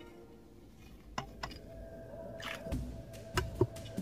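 Light knocks as a straight pointer rod prods inside a hollow cork bark tube, about six of them starting about a second in. Quiet background music with a single held note runs under them.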